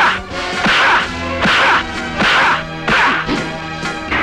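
Dubbed film-fight punch sound effects: five swishing hits, about one every three quarters of a second, over background score music.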